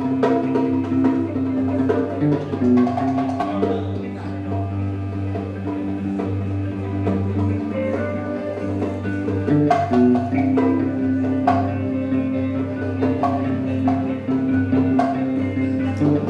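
A live band plays: a wooden Native American-style flute holds long notes over electric bass and guitar, with light hand percussion tapping through.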